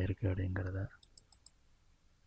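A man's voice speaking briefly, then about a second in a quick run of four or five faint, high clicks.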